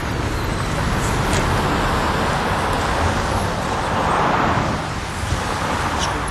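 Street traffic noise: a steady rumble of road traffic with passing cars swelling about a second in and again around four seconds in.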